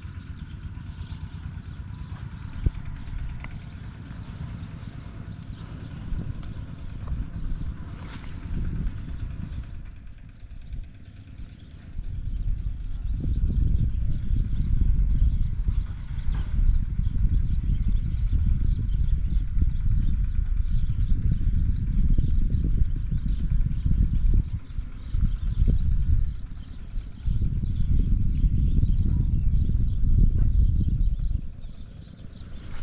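Wind buffeting the microphone in gusts, a low rumble that becomes much stronger about twelve seconds in and drops away briefly a couple of times.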